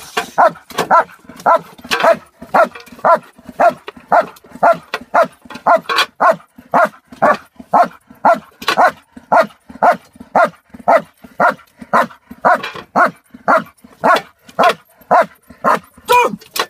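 German Shepherd barking steadily and rhythmically at a helper's jute bite sleeve, about two barks a second: a working dog's demand barking in protection training.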